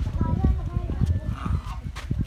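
Domestic geese giving a few faint short calls over irregular low thumping and rumble.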